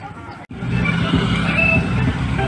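Outdoor street noise of passing motor traffic with scattered voices. It starts abruptly and much louder after a brief drop-out about half a second in.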